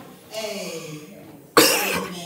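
A single loud cough near the end, very close to a handheld microphone, after a few soft spoken words.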